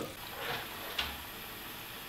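Faint steady hiss of a wok of broth cooking over a gas burner, with one light tick about halfway through.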